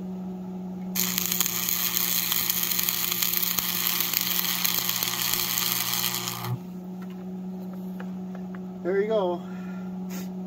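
Stick-welding arc from a Lincoln AC-225 AC welder, crackling and sizzling from about a second in for some five and a half seconds as the last of an electrode rod burns off, then cutting off suddenly. A steady hum runs underneath throughout.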